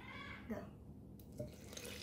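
Water pouring from a thermos flask into a plastic blender jar. It starts faintly about a second in and grows louder toward the end.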